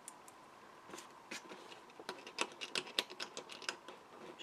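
Light, irregular clicking and tapping of small metal paper brads and cardstock being handled by hand, starting about a second in and running in quick uneven ticks.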